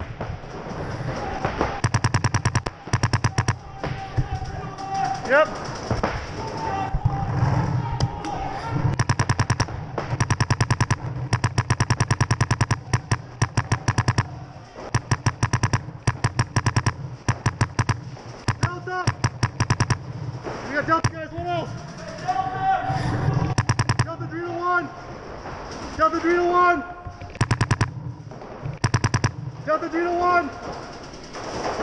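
Paintball markers firing rapid strings of shots, string after string with short gaps between them. Players are shouting in between, most of all in the second half.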